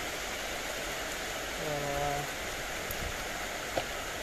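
Steady hiss throughout, with a man's short hummed "mm" on one held pitch about two seconds in and a single light click near the end.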